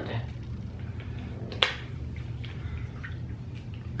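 Quiet mouth sounds of people chewing chocolate candy bars over a steady low hum. One sharp click and a brief word come about one and a half seconds in.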